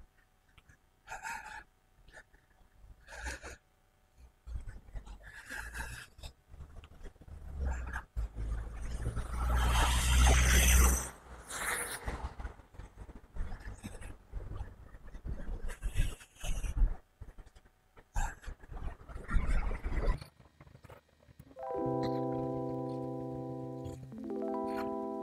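Gusts of wind noise on the microphone, coming and going, with the loudest rush around ten seconds in. Near the end, background music with held chords starts.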